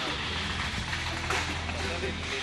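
Steady low rumble of street background noise from an outdoor live feed, with faint, indistinct voices in it.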